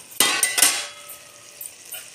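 A spoon scraping and clinking against the side of an aluminium pot of cooked sweet rice, two quick strokes in the first second.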